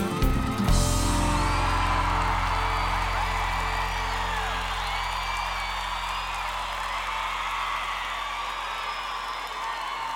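Live band ends the song on a last hit under a second in, its final chord then held and slowly fading, while the audience cheers and whistles over it.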